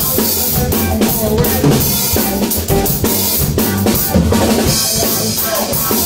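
Rock band playing an instrumental passage with no vocals: drum kit with bass drum, snare and cymbals prominent, over electric bass and electric guitar, with a steady beat.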